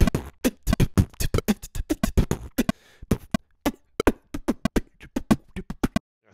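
A recorded beatbox groove of mouth-made kicks, snares and hi-hats playing back against a metronome click. The beatbox was recorded at a much faster tempo than the click, so the two don't line up.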